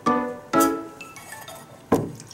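Background music: three ringing, chime-like notes, each starting sharply and fading away before the next.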